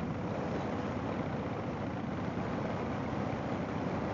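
Harley-Davidson Fat Boy V-twin running steadily at cruising speed, its rapid exhaust pulses mixed with wind rush.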